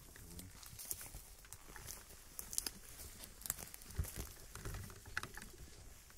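Footsteps of several people crunching over dry forest litter and twigs on dirt ground, an irregular patter of small cracks and scuffs with a few heavier thuds.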